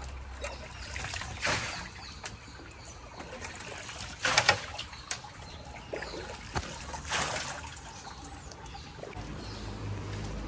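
Wet fishing net being pulled by hand out of the water into a wooden canoe, water trickling and dripping off the mesh, with three louder splashes spread through.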